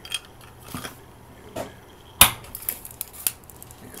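Plastic suction-cup mount arm of a car phone dock being handled: a handful of separate hard plastic clicks and knocks, the loudest and sharpest a little after two seconds in.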